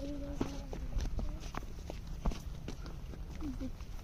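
Footsteps walking on a dry dirt path, irregular scuffs and ticks. A person's voice holds one low note through the first second or so and murmurs briefly near the end.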